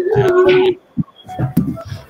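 A person's voice over a video call: one drawn-out vocal sound held on a steady pitch for under a second, then a sharp click and brief, faint voices.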